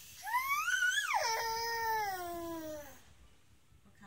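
A small child's single long, high-pitched whining cry that rises in pitch for about a second, then slides down and fades out near the end.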